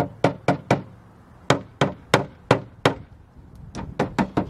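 Wooden mallet tapping the aluminium-cased rear wiper motor of a 2005 R50 Mini Cooper in quick light knocks, about three to four a second, in two runs with short pauses between. The motor has stopped working, and the taps are meant to free up its sticking brushes.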